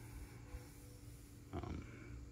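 A quiet pause with a faint steady electrical hum of room tone, and a short breath-like sound a little after the middle.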